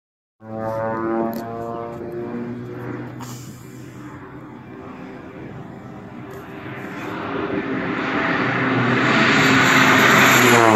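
Crop-duster airplane's engine and propeller droning steadily. The sound eases off through the middle, then grows louder as the plane comes in low toward the listener.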